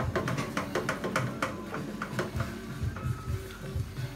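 A wooden spoon knocks and slaps irregularly, several times a second, against a metal pot as thick corn funji is stirred hard, over steady background music.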